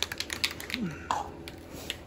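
Sharp plastic and metal clicks and taps from an aerosol spray-paint can and its cap being handled, bunched in the first half second and again near the end.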